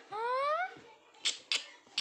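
A short squeal that rises in pitch, about half a second long, then sharp slaps about a second and a half in and again at the end as the toddler hits with her hands.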